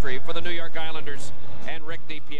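A television hockey commentator talking: continuous speech with no other sound standing out.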